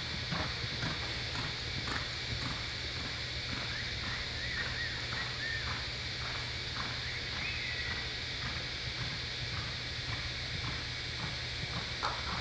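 Hoofbeats of a reining horse loping on soft arena dirt: an even, muffled rhythm of about two beats a second.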